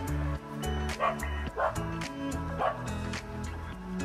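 Background music with a steady beat, and a small dog giving three short barks in the first three seconds.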